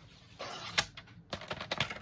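Paper trimmer cutting paper: a short hiss as the cutter slides along its track, then a quick run of sharp clicks about a second and a half in.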